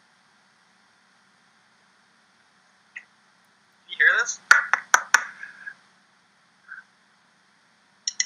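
Mostly quiet, then about four seconds in a brief burst of a person's voice, sliding in pitch, mixed with a few sharp clicks, lasting under two seconds.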